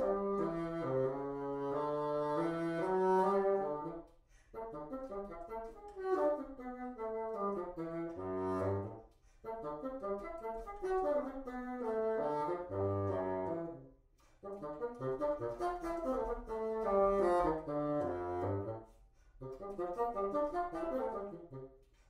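Solo bassoon playing flowing phrases of quick runs that rise and fall. Each phrase lasts about five seconds and ends in a short breath gap, and several end on a low note.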